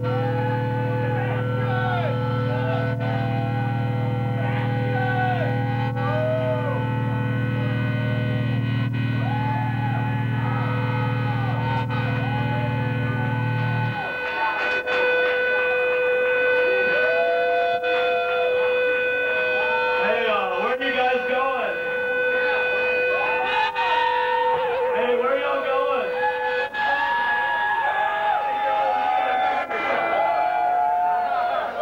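Guitar amplifier feedback left ringing on stage: several steady whistling tones over a low amp drone. The drone cuts off suddenly about halfway through. Voices shout and call over it throughout.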